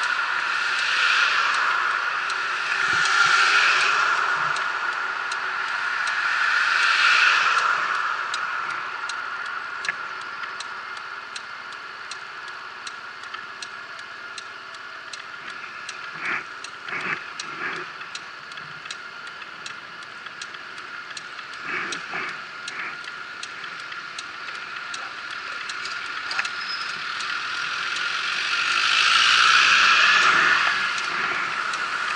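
Road traffic passing close by a stopped scooter. Passing vehicles swell loudest over the first several seconds and again near the end, as a van goes by. Between them a regular ticking runs, with a few short clattering knocks.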